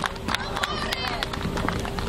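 Scattered hand claps from an outdoor crowd, with voices mixed in.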